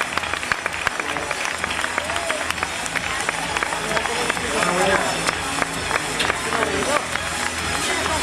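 Audience applauding and cheering, many hands clapping at once, with music playing underneath and scattered voices.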